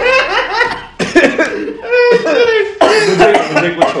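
Men laughing hard together in repeated bursts.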